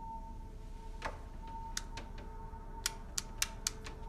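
Sharp little clicks of a small square glass bottle and its cap being handled, a soft knock about a second in and then about five quick clicks in the second half. Under them runs a steady, low sustained drone of film score.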